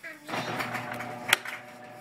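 Garage door opener motor running with a steady hum as the door closes. A sharp click comes a little past a second in.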